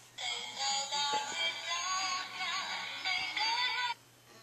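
Big Mouth Billy Bass singing-fish app playing through an iPad's speaker: a voice singing over music that starts suddenly and cuts off suddenly just before the end.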